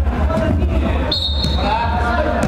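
Players' voices calling out over a steady low rumble during an indoor five-a-side football game, with a short, steady high whistle-like tone about a second in.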